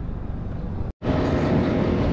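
Riding noise of an FKM Slick 400 maxi scooter on the move: engine hum with a rush of road and air noise. About a second in, the sound cuts out for an instant and comes back louder, the steady engine hum plainer.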